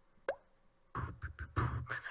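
A single short pop with a quick upward pitch sweep, then from about a second in a run of beatbox-style mouth-percussion sounds, low thumps and clicks in an uneven rhythm.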